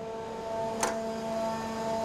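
A steady machine hum made of several tones, with one short sharp click about a second in as the lathe enclosure's sheet-metal maintenance door is unlatched and swung open.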